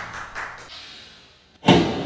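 A single sharp thud with a short ringing tail, a little over one and a half seconds in: a Japanese longbow arrow striking the target.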